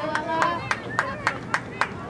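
Rhythmic hand clapping, sharp claps about three or four a second, with distant shouting voices from the field.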